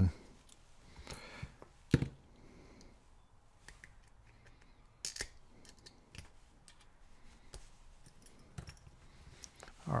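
Small metallic clicks and scrapes of a retaining clip being worked off the back of a pin-tumbler lock cylinder with pliers and fingers, with a sharper click about two seconds in and another about five seconds in.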